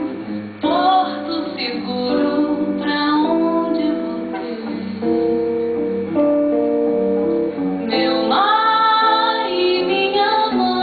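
A woman singing a slow bossa nova to acoustic guitar accompaniment, holding a long note with vibrato near the end.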